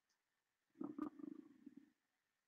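Near silence, broken about a second in by a brief, faint, low murmur of a person's voice lasting about a second, with a small click.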